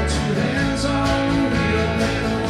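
Live country-rock band playing an instrumental stretch between sung lines: strummed acoustic guitars, electric guitar, bass and drums with cymbals.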